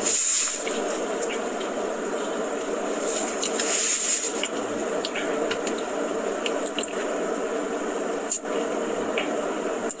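A thick milkshake being sucked through a straw, over a steady hiss, with louder slurps at the start and again around four seconds in.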